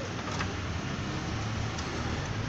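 Denon DCM-280 five-disc CD changer's mechanism running between discs: a low steady whir with a couple of faint clicks as it moves to disc 4 and reads it.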